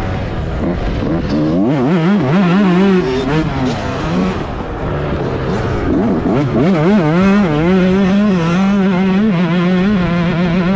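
Yamaha YZ125 two-stroke single-cylinder engine heard onboard under race throttle. Its revs climb, waver and drop back around the middle as the rider eases off for a corner, then climb again and hold high and steady near the end.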